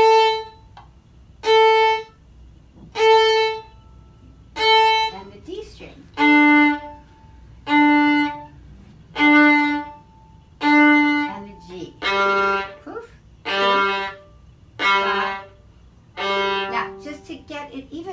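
A violin bowing separate notes on its open strings: four on the open A, four on the open D, then four on the open G, each about a second long with a sharp start and a short gap between. The strokes are practice for a straight bow that is balanced by the arm with loose fingers.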